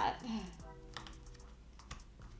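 Jigsaw puzzle pieces being handled on the table: a few light, separate clicks as pieces are picked up and pressed into place.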